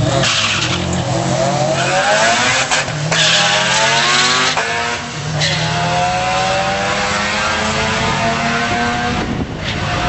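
A rotary-engined Mazda RX-7 and a Subaru WRX launching off the line and accelerating hard down the drag strip, engine pitch rising and dropping back at each upshift, three or four shifts, then one long rising pull in a high gear.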